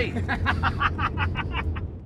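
Men laughing in a quick run of short bursts inside a moving ute's cabin, over the steady low rumble of the engine and road.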